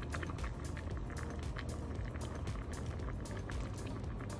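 Water at a rolling boil in a stainless steel saucepan of rice noodles, bubbling steadily with many small pops.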